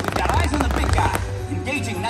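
Fireworks bursting and crackling in a quick, dense run during the first second or so, with a few more pops later, over loud show soundtrack music with a heavy bass.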